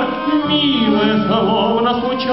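Live acoustic ensemble music: an instrumental passage of a slow Russian romance, a melody with wide vibrato over sustained chords.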